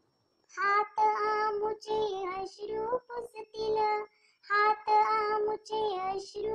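One voice singing a Marathi children's poem in phrases with held, steady notes. It starts about half a second in and breaks briefly about four seconds in.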